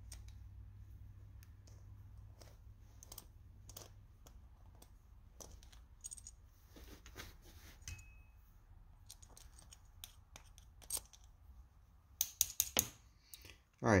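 Faint, scattered small metallic clicks and taps of a flathead screwdriver unscrewing the brass main jet from a Toro snow blower's carburetor, with a quicker, louder run of clicks near the end as the jet comes free. A faint low steady hum runs underneath.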